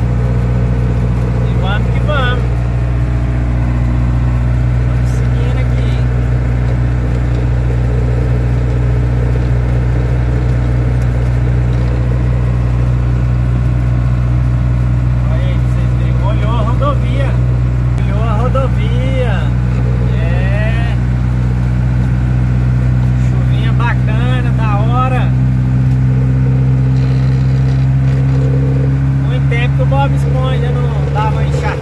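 Mercedes-Benz 608 truck's diesel engine running steadily at highway cruise, heard inside the cab. Its note rises slightly in the last few seconds. A few brief higher-pitched sounds come and go over it.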